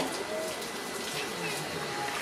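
Low, steady water noise from a sea lion swimming and splashing at the surface of its pool, with faint voices in the background.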